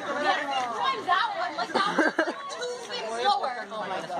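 Chatter: several young male voices talking over one another.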